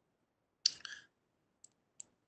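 A few short clicks of a computer mouse: two close together a little after half a second in, then faint single ticks near the end.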